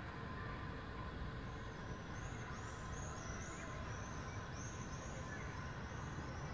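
Steady outdoor urban background: a low rumble of distant traffic. From about a second and a half in, a run of high, thin chirps repeats several times a second.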